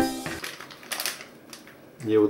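Plastic snack wrapper crinkling and tearing as it is pulled open by hand, in a short burst of crackles about half a second to a second in, then quieter rustling. A held musical tone fades out at the very start.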